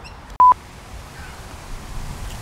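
A short, loud electronic beep at one steady pitch, about half a second in.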